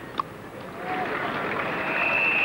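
A cricket bat strikes the ball with a single sharp knock. From about a second in, crowd applause swells and holds.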